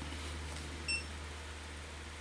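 Quiet room tone with a steady low hum, broken by a single short, high-pitched electronic beep about a second in.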